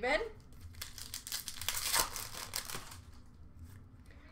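Trading cards and crinkly foil pack wrappers being handled by hand: rustling with soft clicks, loudest around two seconds in and fading after.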